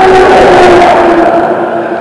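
A loud, steady engine drone with a humming tone. The tone dips slightly in pitch and eases near the end, as a passing engine does.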